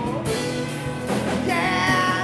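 Live rock band playing: a sung lead vocal over electric guitars, bass and a drum kit, with a steady cymbal beat.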